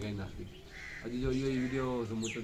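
A pet parrot gives a brief harsh call a little under a second in, with a man's voice alongside.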